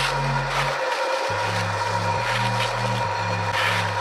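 Electronic music of low, sustained droning tones that step between pitches every half second or so, dropping out briefly about a second in, over a thin steady high tone and hiss.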